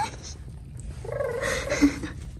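A person's voice making a short drawn-out high sound about a second in, with a sharp, loud hit near the end.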